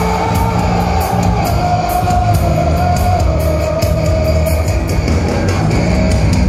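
Heavy metal band playing live: distorted electric guitars, bass and drums with a steady run of cymbal hits, and a long held high note over the top.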